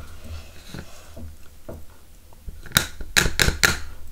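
Hands handling small plastic craft items: faint rustling at first, then a quick run of about five sharp plastic clicks and taps near the end.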